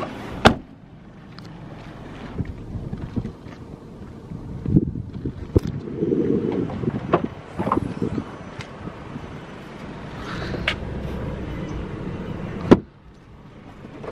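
Kia Sorento bodywork being handled: a car door shut with a sharp thud about half a second in, scattered knocks and rustles, then a second sharp clunk near the end as the tailgate opens.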